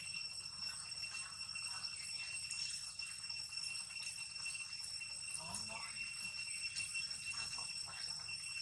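A steady high-pitched whine with a couple of higher overtones, unchanging throughout, over faint background sound.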